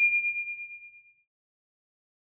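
Notification-bell 'ding' sound effect: a bright metallic chime of a few high tones, ringing out and fading away about a second in.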